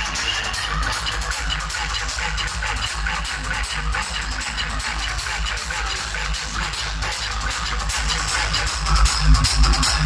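Electronic dance music played loud over a DJ sound system, with a heavy pulsing bass; it gets louder near the end.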